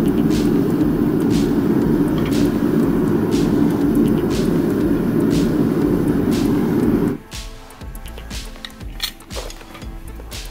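Propane-fired smelting furnace burner running steadily, then shut off suddenly about seven seconds in, so the noise of the flame stops at once.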